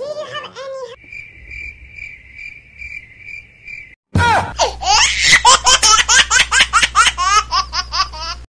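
Electronic beeping, a high tone repeating about twice a second, like a timer counting down; about four seconds in it cuts to a sudden loud burst followed by rapid, high-pitched laughter, the loudest sound here.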